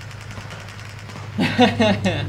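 A steady low engine drone from tank combat footage playing on a computer, with faint keyboard typing. A person laughs over it in the last half second.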